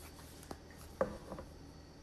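A deck of cards handled and shuffled by hand: a few faint, short taps and slides of the cards, the clearest about a second in.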